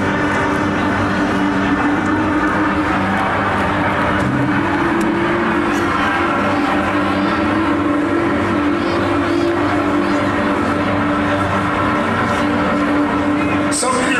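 Loud live industrial-metal band sound heard from within the audience: a dense, droning wall of sustained distorted chords without a clear beat, with sharp crashes right at the end.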